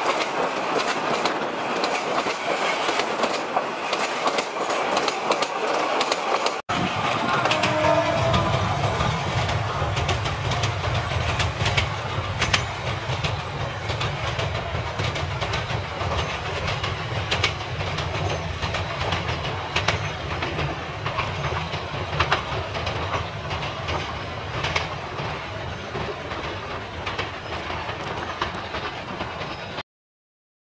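Diesel-hauled meter-gauge commuter train passing close by, its coaches clattering and its wheels clicking over the rail joints. After a cut about a third of the way in, the train approaches with a steady low rumble from its locomotive under the continuing wheel clicks.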